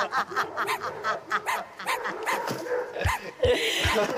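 A dog barking and yipping in a run of short, sharp barks. No dog is in the picture, so it is an added comedy sound effect. A few low beats follow near the end.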